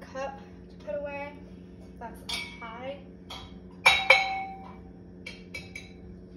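Dishes clinking as they are unloaded and put away: two sharp, ringing clinks about four seconds in, then a few lighter clinks near the end, over a steady low hum.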